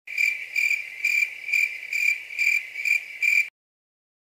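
Cricket chirping sound effect: a high, steady chirp repeating about twice a second, cutting off suddenly just before the end.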